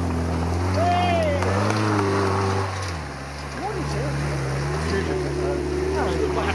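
Engine of a small open trials buggy pulling steadily up a steep muddy hill climb. About halfway through the note dips and shifts, then steadies again as the car carries on up the hill.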